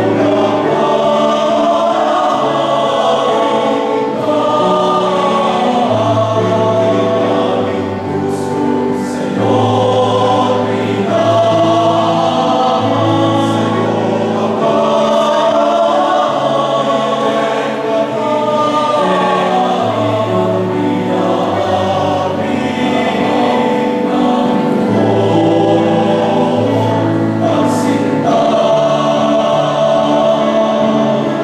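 All-male choir singing a slow hymn in several-part harmony, with long held chords.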